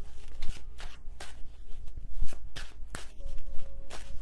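Tarot deck being shuffled by hand: a quick, irregular run of cards slapping and flicking against each other.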